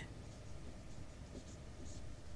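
Faint sounds of someone writing by hand: a few soft strokes.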